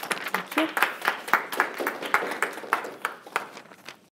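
A small audience clapping after a talk, a handful of people giving a short round of applause that thins out and fades near the end.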